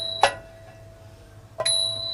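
Small Thai hand cymbals (ching) keeping time in a nang talung ensemble. A bright ringing stroke dies away, a short damped strike follows about a quarter second in, and another ringing stroke sounds shortly before the end.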